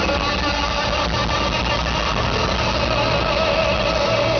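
Live rock band playing loud through the PA, recorded from the audience: electric guitars and bass over a steady low rumble, with no break.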